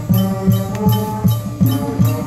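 High school marching band playing, a low drum beat about three times a second under held chords.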